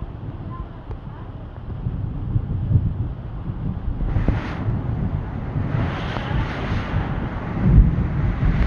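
A rain squall arriving: rain starting to come down hard with gusting wind, swelling louder from about two seconds in, with gusts rumbling on the microphone.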